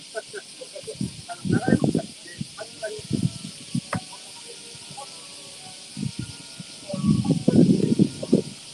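Outdoor ambience: a steady high hiss under intermittent low murmuring of nearby people's voices, loudest about a second and a half in and again near the end.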